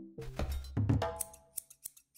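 Cartoon transition sound effects: a brief musical flourish over a low whoosh, then a handful of quick, sharp clicks in the second half.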